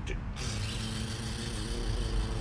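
A man imitating a drum roll with his mouth: a steady rolled, rattling "brrr" with a buzzing pitch, starting shortly after a spoken "dun" and held for about two seconds.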